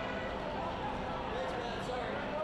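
Soccer match ambience from the pitch: a steady hiss of stadium and field sound with faint, distant voices calling, heard briefly in the second half.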